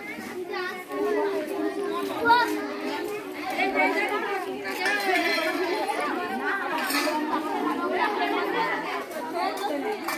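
A crowd of women and children chattering, many voices overlapping at once.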